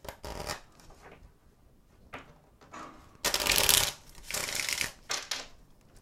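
A deck of Lenormand cards being shuffled by hand, in several short bursts of rustling, the longest and loudest about three seconds in.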